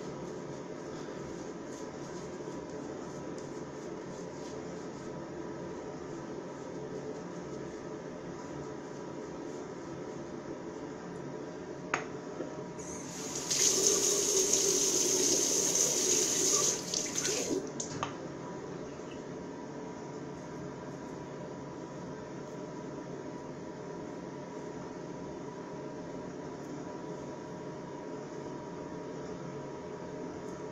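Bathroom sink tap running for about four seconds, starting a little before the middle, preceded by a single click; otherwise a steady faint hiss.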